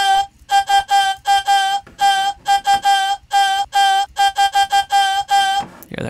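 A vocal sample played as a synth lead from Ableton's Sampler, in a rhythmic run of short staccato notes nearly all on one pitch. It has a really short Valhalla Room reverb tail and effect processing that adds almost like a chorusing effect and a little bit of space.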